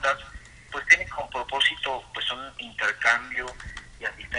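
A man speaking Spanish, his voice carried over a telephone line.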